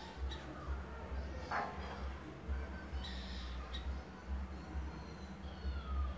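Small birds chirping on and off in the background over a low rumble, with a short louder sound about a second and a half in.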